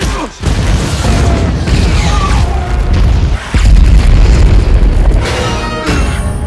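Film fight-scene soundtrack: a music score over heavy booming impacts, the loudest boom coming in about three and a half seconds in.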